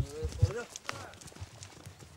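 Horse's hooves stepping on a snowy dirt trail: a few heavy thuds in the first half-second, then lighter, uneven steps.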